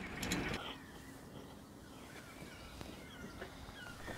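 Quiet outdoor background with faint, scattered bird chirps, after a brief burst of rustling noise in the first half second.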